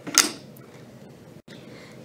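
Lever-operated elastic cutter pushed down to cut a strip of elastic: one sharp clack about a fifth of a second in as the blade comes down.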